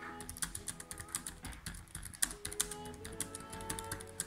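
Fast typing on a laptop keyboard: a quick, irregular run of plastic key clicks, heard over background music with held notes.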